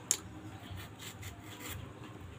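A knife paring the skin off a ripe mango, soft scraping and rasping strokes, with one sharp click just after the start.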